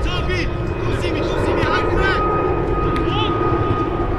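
Players' short shouts and calls carry across a grass football pitch, three or four brief calls. Under them runs a steady low drone and rumble, and a thin steady tone.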